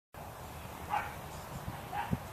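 A dog gives one short, high-pitched yip about a second in, and a fainter one near the end.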